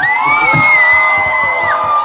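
Concert crowd cheering, with one high-pitched scream held for about a second and a half above other shouting voices.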